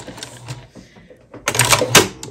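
Juki TL-2010Q straight-stitch sewing machine finishing a line of stitching with a back stitch: the motor and needle run briefly and stop, then after a pause a short, loud burst of machine noise comes near the end as the thread is cut.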